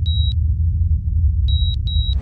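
Intro sound effect: electronic heart-monitor beeps, one at the start and two in quick succession near the end, over a steady low rumbling drone.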